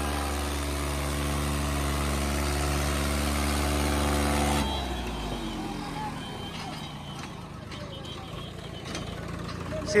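Swaraj 855 FE tractor's three-cylinder diesel engine running flat out under full load, pulling hard against another tractor, steady and loud. About four and a half seconds in the throttle is cut and the engine's pitch falls away as it drops back toward idle.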